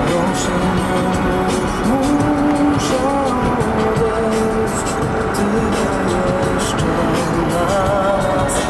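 Steady road and wind noise inside a moving car, with music playing over it.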